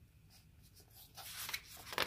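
A picture-book page being turned by hand, the paper rustling and sliding. It starts about a second in and gets louder near the end.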